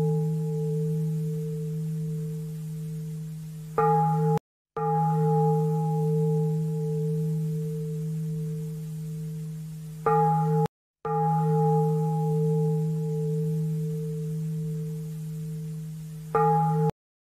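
A struck bowl bell ringing with a deep hum and higher overtones that slowly fade. It is struck anew about every six seconds, and each time the fresh stroke is cut off by a short gap of silence, repeating identically like a looped recording.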